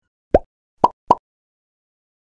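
Three short plopping pop sound effects: the first a quick bloop rising in pitch, then two more in quick succession about a second in.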